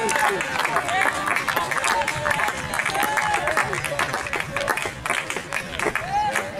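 Small crowd of football spectators clapping steadily, with voices calling out over the claps.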